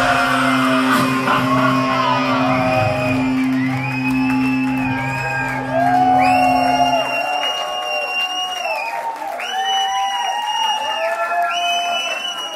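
Crowd cheering, whooping and whistling at the end of a song, while a low held note from the band rings on and stops about seven seconds in; the cheering carries on after it.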